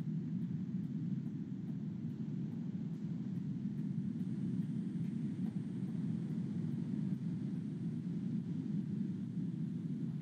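Steady low rumbling background noise, even and unbroken, such as room or machine noise picked up by an open microphone on a video call.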